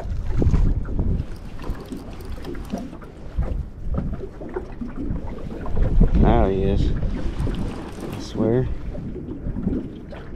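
Wind buffeting the microphone in a steady low rumble while a Piscifun Chaos XS baitcasting reel is cranked against a hooked catfish. A man's voice makes two short sounds, about six and eight and a half seconds in.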